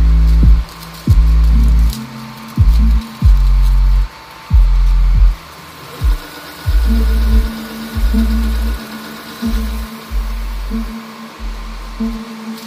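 Background music with a heavy bass line and repeated drum hits.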